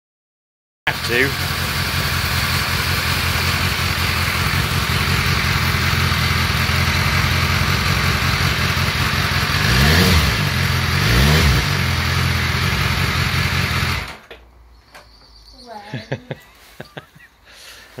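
BMW S1000R's inline-four engine idling steadily and revved briefly twice, about ten and eleven seconds in, then cutting out suddenly about fourteen seconds in.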